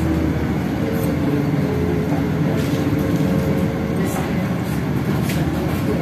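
City bus heard from inside the passenger cabin as it drives: a steady engine and road rumble with a faint steady whine, and a few sharp rattles from the interior fittings.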